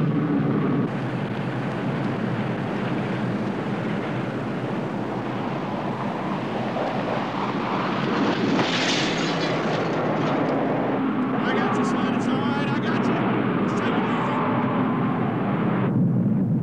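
Film sound effect of a nuclear blast: a continuous, dense roaring rumble that holds steady, with a slight drop in level about a second in.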